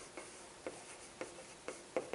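Chalk on a chalkboard as a word is written: short taps and scrapes of the chalk against the board, about two a second.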